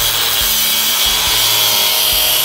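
Cordless angle grinder running steadily as it cuts through a thin perforated sheet, cutting poorly.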